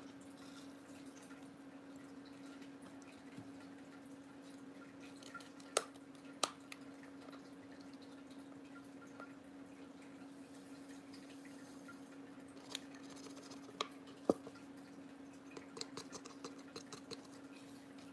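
Quiet handling of a clear plastic ornament and a squeezed plastic cup as glitter is poured in: a few sharp, light clicks and taps spread through, over a steady low hum.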